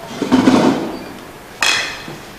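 Handling knocks at a table: a heavy knock lasting about half a second, then a sharp clatter about a second and a half in, as a car key and phone are set down and a chair is moved.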